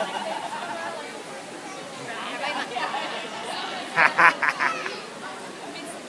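Voices and chatter of an outdoor crowd, with a short burst of loud vocal pulses about four seconds in.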